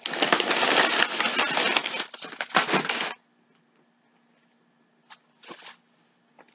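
Thin plastic shopping bag and bread packaging crinkling and rustling as they are handled. The rustling stops about three seconds in, and a short rustle comes near the end.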